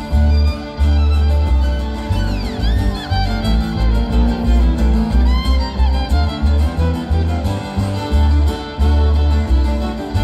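Live jamgrass band playing an instrumental passage: bowed fiddle leading over two strummed acoustic guitars and an upright bass plucking steady low notes. The fiddle slides between notes a few seconds in.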